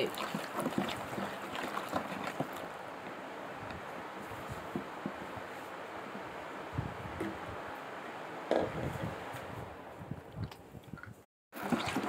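Thick liquid shower-gel mixture being stirred in a large bowl with a wooden stick: a steady wet swishing and sloshing with small irregular clicks. The sound cuts out briefly near the end.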